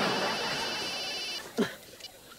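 A cell phone ringing with a high electronic trill for about a second and a half, over a burst of studio-audience laughter that stops at the same moment. A brief voice sound follows near the end.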